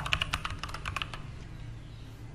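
Computer keyboard typing: a quick run of keystrokes that stops a little over a second in.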